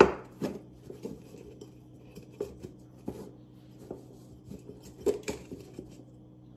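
Plastic cloche and decorative eggs being handled on a terracotta pot: a sharp knock at the start, then a few faint taps and rubs as the eggs are shifted inside the cloche.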